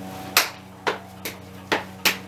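Hands and forearms slapping together in a two-man backhand trapping (hubad) drill: four sharp slaps about half a second apart, the third one lighter, as parries and strikes land in the flow.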